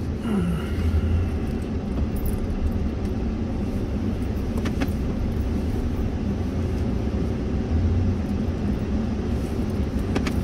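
Car on the move, heard from inside the cabin: a steady low rumble of engine and road noise, with a single click about five seconds in.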